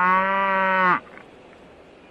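A cow mooing: one long moo, held at a steady pitch and cutting off sharply about a second in.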